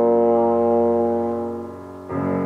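Trombone holding one long note with piano accompaniment, the sound fading away over the last half second.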